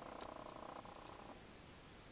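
Near silence: faint room tone with a soft, even buzz that fades out about two-thirds of the way through.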